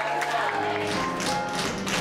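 Tap shoes striking a stage floor in rhythm over a show-tune accompaniment, the taps coming in about half a second in.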